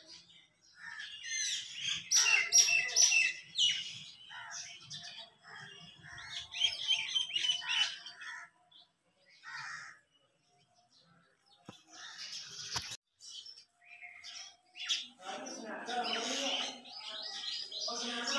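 Small birds chirping in repeated quick bouts, a busy burst in the first few seconds and more after about six seconds and again toward the end. A person's voice comes in near the end.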